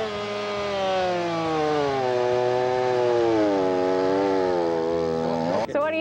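Echo two-stroke chainsaw running hard as it cuts into a log, its pitch sinking slowly under the load and wavering. It stops abruptly near the end.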